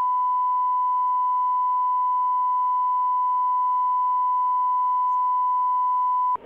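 A steady 1 kHz line-up test tone, one unbroken pure beep at a constant level, with a faint overtone above it. It is the broadcast feed's holding signal while the meeting is paused.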